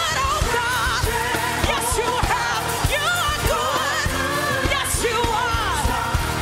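Live gospel worship song: a woman sings lead with a wavering vibrato over a full band with steady drum hits and bass.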